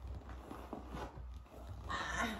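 Quiet handling sounds, soft fabric rustle and shuffling movement, as a baby is lifted from the floor, over a low steady hum.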